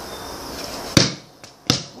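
A basketball bounced twice on a concrete driveway while being dribbled, two sharp thuds about a second in and again just after, the first the louder.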